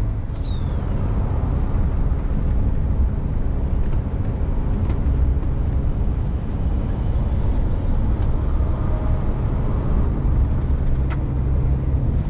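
Scania truck heard from inside its cab while cruising on a highway: a steady low drone of engine and road noise. A brief high falling whistle sounds about half a second in.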